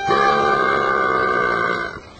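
A single long, held low note from a brass instrument, buzzy and steady, lasting almost two seconds and cutting off suddenly.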